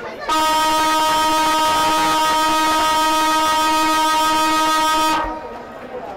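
Football ground siren sounding one long, steady horn-like blast of about five seconds, which starts suddenly and fades at the end. It marks the end of the quarter.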